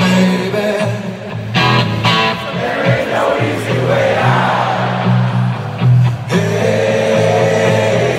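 Live rock band music recorded from within the audience: a strummed guitar over steady bass notes, with singing and the voices of a crowd mixed in.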